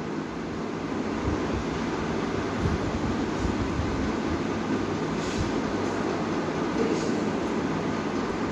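Steady background machine noise: an even low hum and rumble, as of a room air conditioner or fan running.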